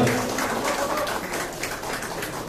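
Audience applause: many hands clapping in a steady patter, answering a call for a hearty round.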